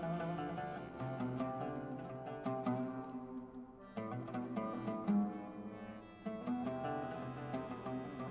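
Oud plucked in a run of notes over held chords from an accordion, playing a slow Yiddish lullaby.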